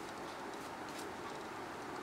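Quiet room tone: a steady faint hiss, with a couple of faint light ticks around the middle.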